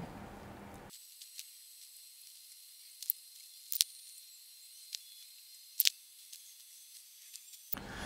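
Faint room tone with a thin high hiss, broken by a handful of small sharp ticks about three, four, five and six seconds in.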